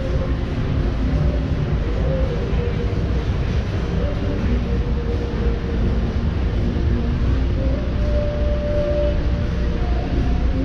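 Busy city street at night: a steady low rumble of passing road traffic, with music playing over it.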